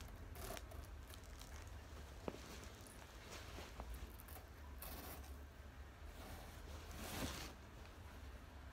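Faint, intermittent rustling of a large white fabric photography backdrop being unfolded and shaken out by hand, in several soft swells, with a single light tick a little after two seconds.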